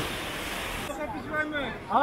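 Steady rushing noise of sea water and wind on the microphone, which cuts off abruptly about a second in; after it, faint people's voices.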